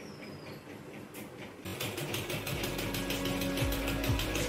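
Usha sewing machine stitching: a rapid, even clatter of needle strokes that starts faintly and grows louder from a little under halfway, with music playing underneath.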